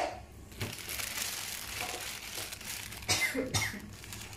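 Plastic bag crinkling and rustling as a crab is handled and laid down on it, with two short, louder bursts about three seconds in.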